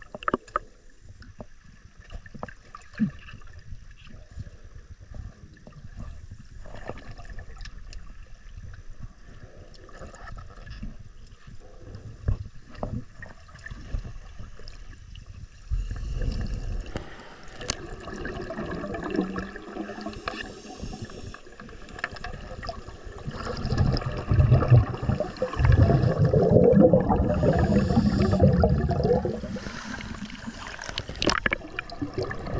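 Water gurgling and sloshing around a camera held underwater, with scattered small clicks. It grows louder about halfway through and is loudest near the end, as the camera nears the water surface.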